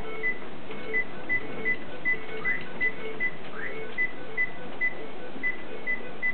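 A computer repeating a short electronic beep in a steady, even rhythm, about two and a half beeps a second, over a steady background hiss.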